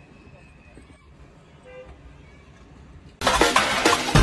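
Quiet car cabin with a low hum and a faint short pitched sound near the middle. A little after three seconds a loud street scene with a vehicle cuts in abruptly.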